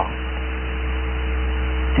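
Steady low electrical hum, mains hum, with two fainter steady higher tones over a constant hiss in the recording.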